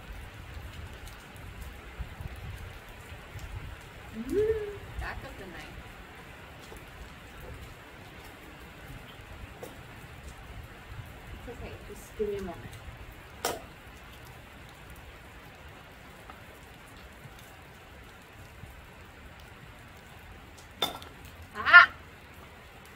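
Heavy rain falling steadily on a sheet-metal gazebo roof, a constant hiss. A few brief murmurs and sharp clicks are heard, and a short vocal sound near the end is the loudest moment.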